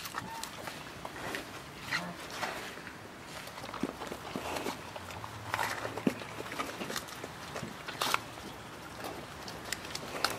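A brown bear cub eating a piece of fruit off the ground: irregular wet crunches, snuffles and scrapes of its paws and muzzle on straw, with a sharper click about eight seconds in.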